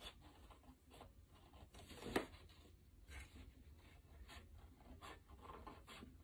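Scissors cutting through a sheet of paper: faint, scattered snips about once a second, one sharper snip about two seconds in.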